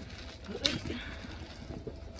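Wrapping being pulled off a bag strap: one sharp crackle about halfway in, then a brief rustle.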